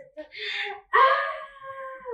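A woman's wordless excited vocalising: a breathy gasp, then, about a second in, a loud drawn-out cry that falls slightly in pitch.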